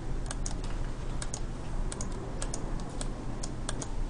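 Typing on a computer keyboard: irregular key clicks, about three a second, as text is entered.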